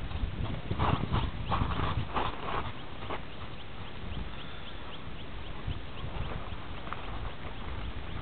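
Horse hooves clip-clopping in a run of uneven footfalls over the first three seconds. After that, a faint, regular series of short high chirps at about three or four a second.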